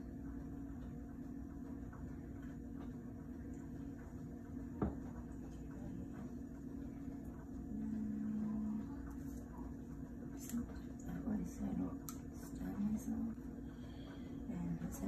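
Steady low room hum with small handling sounds of a syringe and glass medicine vial on a counter: one sharp click about five seconds in, then scattered light taps and clicks near the end as the vial is set down and the syringe handled.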